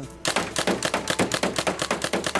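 Paintball marker firing a rapid burst, about ten shots a second, starting just after the beginning and running on for about two seconds.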